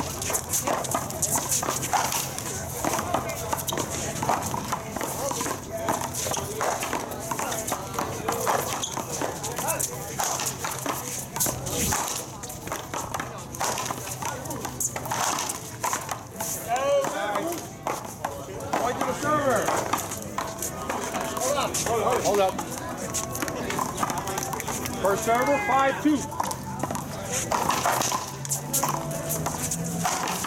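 One-wall paddleball rally: a rubber ball is hit with solid paddles again and again. It smacks off the paddles and the concrete wall in a long run of sharp knocks.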